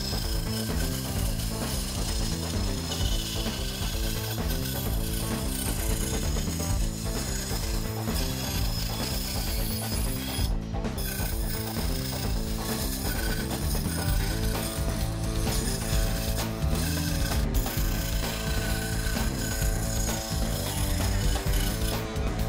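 Benchtop scroll saw cutting plywood, a steady mechanical clatter, over background music.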